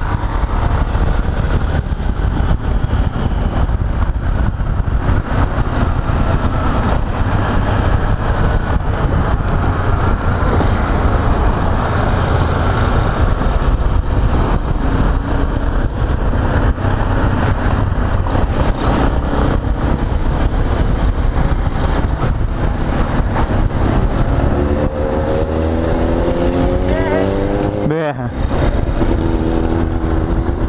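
A Yamaha XTZ 250 Ténéré's single-cylinder engine under way, heard through heavy wind rumble on a helmet-mounted microphone. In the last few seconds the engine note stands out clearly, its pitch rising and falling as the throttle changes.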